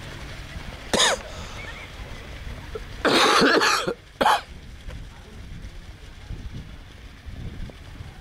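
A person coughing close to the microphone: one short cough about a second in, then a longer run of coughing about three seconds in and one more short cough just after.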